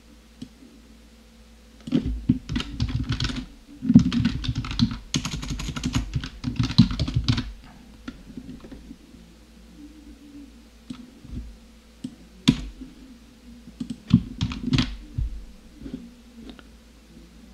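Typing on a computer keyboard: a fast run of keystrokes from about two seconds in until past seven seconds, then a pause and a few scattered key presses, with a short burst near the end.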